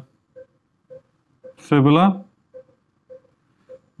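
One drawn-out hesitation 'uh' in a man's voice about halfway through, its pitch bending up. Otherwise faint, short, low beeps come about every half second.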